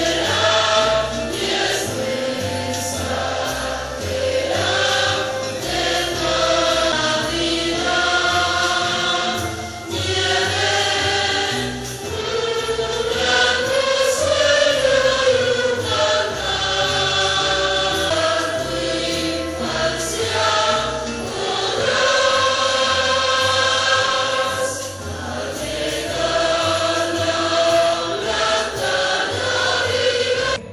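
A large choir of children and young people singing a Christmas carol, with acoustic guitars accompanying them.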